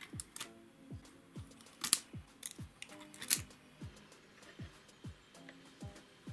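Background electronic music with a steady beat. Over it come a few sharp, crackly clicks, the loudest about two and about three seconds in, from the backing film being peeled off double-sided tape with tweezers.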